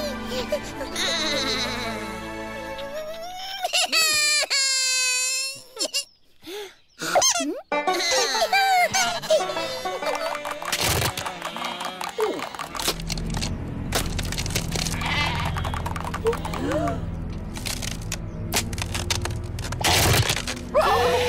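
Animated-cartoon soundtrack: background music with sheep characters' bleats and wordless vocal noises. It drops almost to silence for a moment about six seconds in, and a low steady tone comes in about thirteen seconds in.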